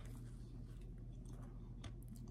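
Faint chewing of a soft Boston cream donut: small, irregular wet mouth clicks over a low, steady hum.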